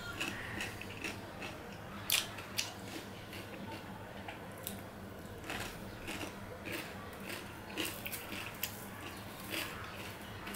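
A person chewing raw cucumber, with irregular crisp crunches.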